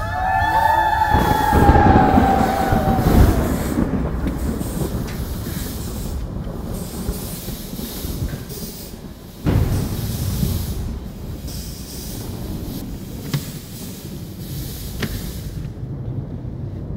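Several overlapping wolf howls, drawn out and sliding down in pitch over the first three seconds, over a loud steady rushing hiss that swells suddenly about nine and a half seconds in.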